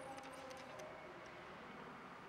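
Faint background ambience with a few light ticks and clicks.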